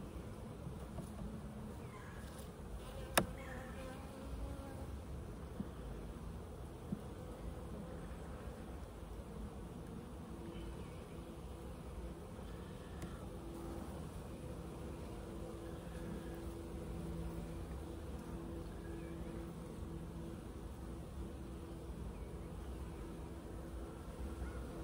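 Honeybees buzzing over an open hive: a steady hum with individual bees droning past, their pitch rising and fading. A single sharp click about three seconds in.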